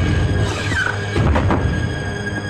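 Tense film background score over a low, steady drone, with a short falling squeal about half a second in and a few sharp hits soon after.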